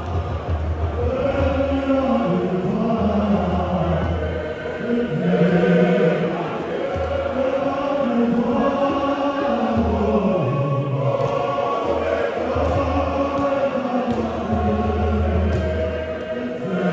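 A large crowd of voices singing a hymn together, many people at once in a steady chant-like song.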